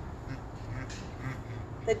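Donkeys braying faintly.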